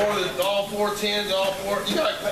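People talking, words indistinct, with a couple of light clicks in the middle.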